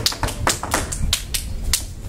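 A rapid, even run of sharp taps, about five a second, stopping near the end.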